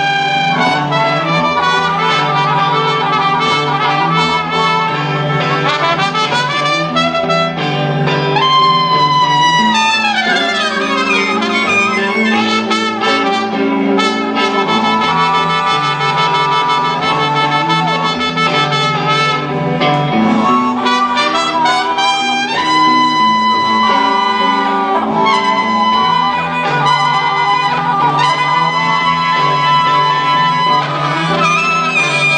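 Blues band playing live, a lead melodic instrument over a steady accompaniment, with a long falling slide about ten seconds in and a held high note near the end.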